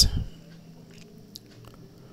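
Faint scratching of a Cello Smooth Write bold-tip ballpoint pen writing on paper, with a few small ticks in the middle.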